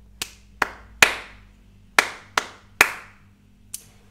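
Hand claps in the rhythm ti-ti ta, ti-ti ta: two quick claps followed by a clap that is given a full beat, played twice. A small faint tick comes near the end.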